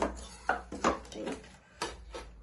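Several light knocks and clatters, about five in two seconds, as a CD with a cap taped to it and other small items are handled and set down on a tabletop.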